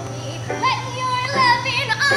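A woman's voice singing a show tune over digital piano accompaniment. About halfway in, her pitch slides up into a held note, then wavers with vibrato.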